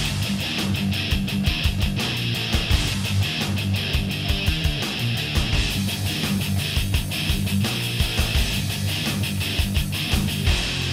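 Death/black metal: distorted electric guitar riffing over fast, even drumming, and the drum pattern shifts a little past halfway.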